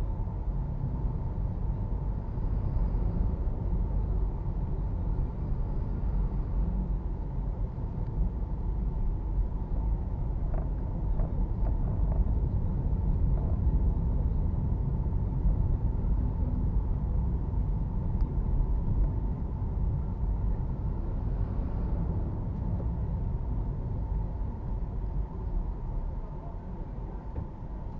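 Car running at low speed in city traffic, heard from inside the cabin: a steady low rumble of engine and tyres, with a faint steady whine above it.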